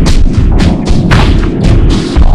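Heavily distorted, bass-boosted edited logo sound effect: a loud, clipped run of thuds at about four a second over a dense low rumble.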